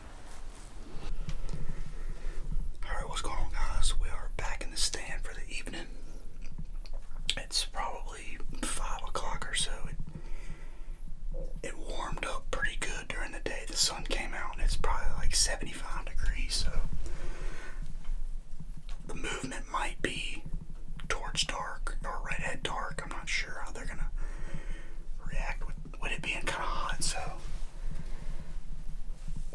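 A man talking in a low whisper, only speech.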